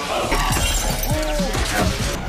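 Glass shattering and breaking during a scuffle, with a music track running under it.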